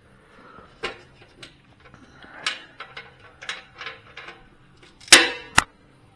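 Handling noises: light scattered clicks and knocks, then two loud ringing clanks about half a second apart near the end.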